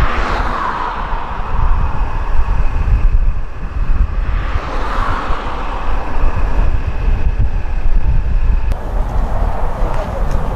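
Cars passing on a highway, two swelling passes about five seconds apart, with wind rumbling on the microphone.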